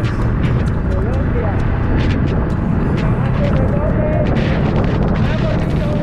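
Heavy wind roar on a motorcycle-mounted camera microphone while riding, with a man's voice half-buried under it.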